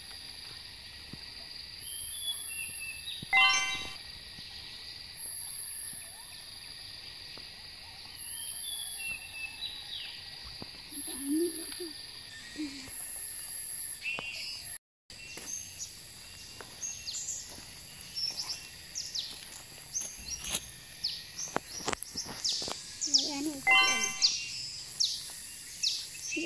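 Orchard ambience: a high insect buzz swelling and fading in pulses every few seconds over a steady high whine, with birds chirping, the chirps growing busier in the second half. A short dropout about fifteen seconds in.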